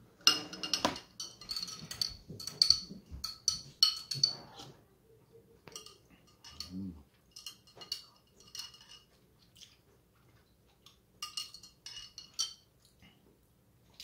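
Metal spoons clinking and scraping against tall drinking glasses as bubble milk tea and coffee are stirred and tapioca pearls are scooped out. The clinks come in several bursts of quick strikes, each with a short ringing tone, separated by brief quiet spells.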